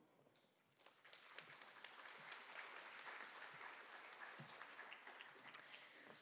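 Faint audience applause, starting about a second in and fading out near the end.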